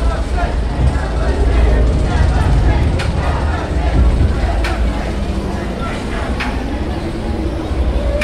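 Nemesis Reborn's inverted roller coaster train standing loaded in its station: a deep steady rumble with a few sharp metallic clanks, about three, four and a half and six and a half seconds in, and riders' voices around it.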